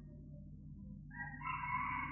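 A faint, drawn-out bird call starting about a second in, over the steady low hum of an old recording.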